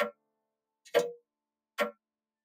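Clock ticking: three sharp ticks about a second apart.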